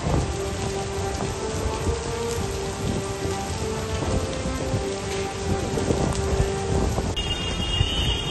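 Heavy cyclone rain pouring steadily onto a waterlogged street, a dense hiss with a low rumble underneath.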